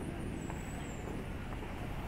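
City street ambience: a steady low rumble of road traffic, with a few faint ticks and a faint high whine that dips slightly in pitch about half a second in.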